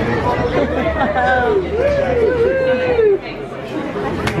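Crowd chatter with one loud voice making several long vocal sounds that slide up and down in pitch through the middle. A steady low hum underneath stops about three seconds in.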